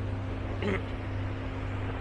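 A raw oyster slurped from its shell: one short slurp about two-thirds of a second in, over a steady low hum.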